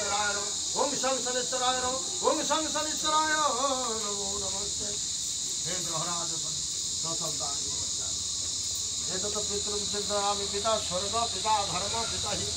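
Steady, high-pitched drone of insects such as cicadas or crickets in the surrounding trees, with people's voices over it for most of the time.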